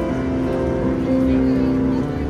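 Piano playing held notes and chords that change about every half second, over a steady low background rumble with crowd chatter.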